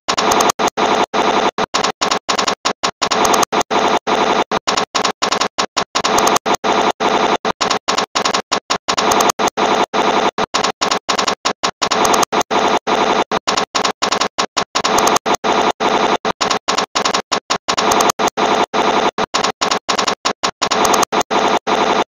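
Harsh, distorted remix audio chopped into rapid stutters, switching on and off several times a second with short silent gaps.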